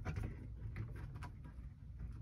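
A keyless RV entry door lock body is handled and fitted into the door's cutout by hand, giving a few faint, scattered clicks and knocks over a low rumble.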